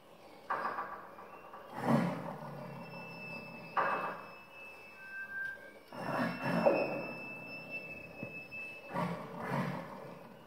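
Contemporary music for flute, piano and electronic tape: a run of about five rough, noisy swells at uneven intervals, each a second or less, with faint high held tones sounding between them.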